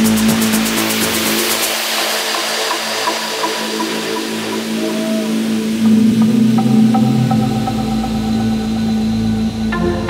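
Techno music in a breakdown: the kick drum drops out about two seconds in, leaving a held low note under a wash of noise. The bass comes back around seven seconds, and the beat returns near the end.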